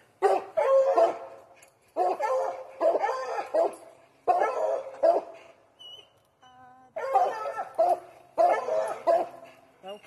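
Coonhounds barking treed at the base of a tree, loud barks coming in clusters about a second apart, with a short lull near the middle: the dogs are holding a raccoon up the tree.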